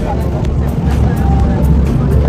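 A river cruise boat under way: a steady low rumble, with faint chatter from the passengers on deck.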